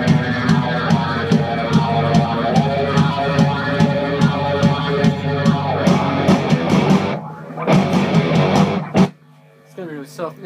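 Heavy rock music with a steady drum beat and distorted electric guitar, playing loudly. It breaks off about seven seconds in, gives one short burst near nine seconds, and then goes almost silent.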